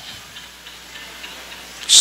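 Light, regular ticking, about three ticks a second, over steady room noise.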